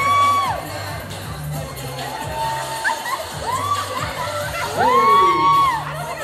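A crowd of guests cheering and whooping, with long, high, held "woo" shouts that rise, hold for about a second and fall away: one at the start, one about halfway through, and the loudest near the end. Dance music with a steady bass beat plays underneath.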